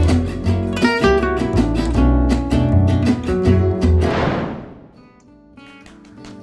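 Gypsy jazz played on acoustic guitar over a low bass line, quick plucked notes that stop about four seconds in. A falling whoosh follows, then quieter scattered notes.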